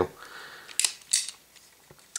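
Chiappa 1873-22 single-action revolver's hammer being drawn back, its action giving two short sharp metallic clicks about a third of a second apart, then faint ticks near the end.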